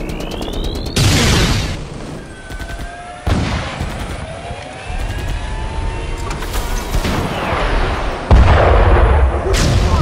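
Battle sound effects: four heavy explosion booms, the loudest near the end, with thin rising and falling whines between them over a low rumble.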